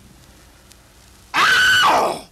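A loud, shrill scream from a person, starting about a second and a half in and sliding down in pitch as it fades.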